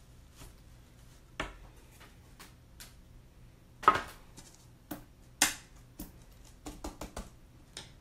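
Scattered knocks, taps and light rustles as a chalkboard sign and craft supplies are handled on a tabletop, the two loudest knocks about four and five and a half seconds in.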